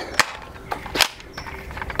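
Nerf Quadfire spring-powered dart blaster being primed and fired: two sharp clicks about a second apart, with a few fainter mechanical clicks between them.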